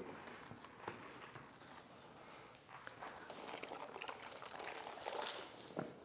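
Faint wet rubbing of a wash mitt over a car's soapy paint, with a few soft clicks and taps.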